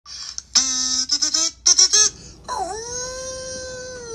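A voice sounding wordlessly over the intro title card: a few short, wavering bursts, then one long held note that dips and then rises before levelling off.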